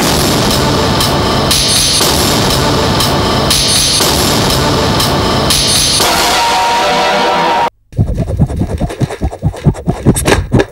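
Loud title theme music with a strong repeating beat, cutting off abruptly near the end. It is followed by a rapid, irregular run of loud percussive hits.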